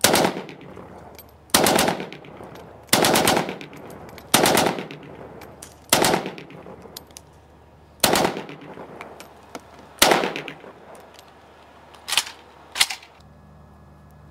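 AK-47 rifle in 7.62×39 mm firing a series of about nine single shots, one to two seconds apart, each followed by a trailing echo; the last two shots come closer together near the end.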